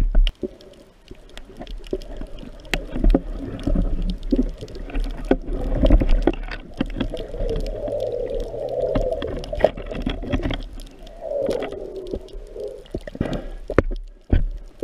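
Underwater sound picked up through a waterproof action-camera housing: muffled water noise with many scattered sharp clicks and knocks, and a murky gurgling stretch around the middle and again near the end.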